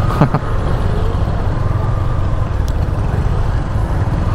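Motorcycle engine running steadily at low speed in slow, queued traffic, heard from the rider's seat as a dense low rumble.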